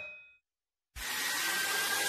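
The last ringing note of an ad jingle fades out, and half a second of silence follows. About a second in, a steady hiss of metal machining starts: a CNC milling cutter working an aluminium wheel, with a faint whine.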